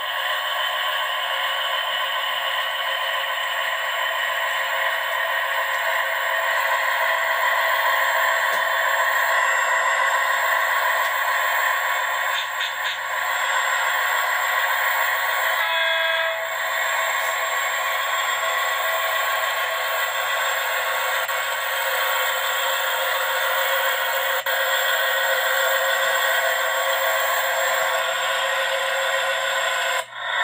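CSX freight train cars rolling past, heard as a video played through a computer's small speakers: a steady rolling noise, thin and tinny with no bass. It breaks briefly about sixteen seconds in.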